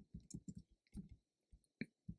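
A quiet, irregular run of about nine clicks from computer input devices in use, one sharper click near the end.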